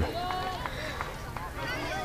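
Faint background voices of spectators and players chattering, with a couple of light ticks about half a second and a second in.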